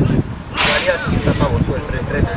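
Indistinct talk of spectators close to the microphone, over a low rumble of wind on the microphone, with a brief hiss about half a second in.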